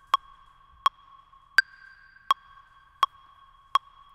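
Electronic metronome clicking steadily at about 82 beats a minute, six clicks, with the first beat of each bar of four accented by a higher-pitched click: the count-in before a drum exercise.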